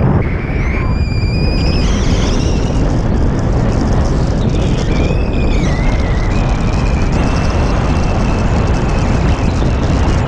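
Loud, steady wind rush buffeting the camera microphone in paraglider flight, mostly low rumble, with a thin high whistle that wavers and shifts in pitch.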